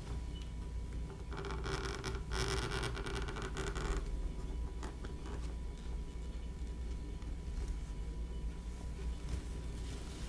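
Craft knife blade drawn through vegetable-tanned leather on a cutting board: one cut lasting about two and a half seconds, starting about a second in, followed by a few fainter scratches of the blade.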